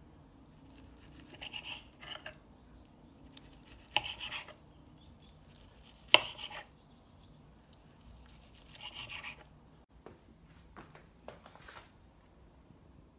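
A kitchen knife slicing through a cooked chicken breast on a cutting board: separate cuts every second or two, a couple of them ending in a sharp knock as the blade meets the board.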